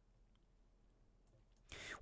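Near silence: room tone in a pause between spoken sentences, with a short soft noise rising near the end just before speech resumes.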